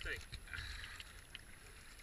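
Kayak paddle strokes in calm river water, the blade dipping and dripping softly, over a low rumble of wind on the deck-mounted camera's microphone.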